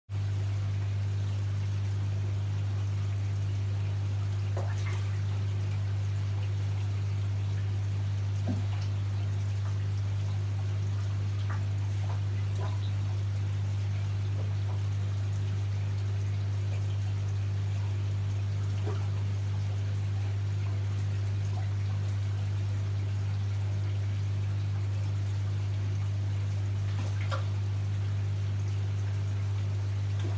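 Aquarium air stone bubbling and water trickling over a steady low hum, with a few faint scattered ticks.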